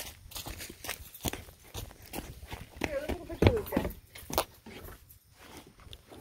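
Footsteps of a person walking over pine needles and dry leaves, heard as a run of short, uneven knocks, with brief voices a little past the middle.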